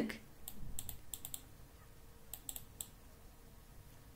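Computer keyboard keys clicking faintly as a word is typed: a quick run of light key clicks in the first second and a half, then a few more about two and a half seconds in.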